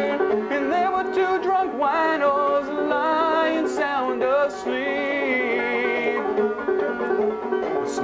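Banjo picked steadily under a man's singing voice, which holds long, wavering notes through the middle.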